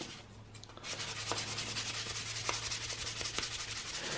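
Sandpaper rubbed back and forth across the underside of a plastic three-blade drone propeller blade in quick, even strokes that start about a second in. It is taking excess plastic off a heavy blade to balance the prop.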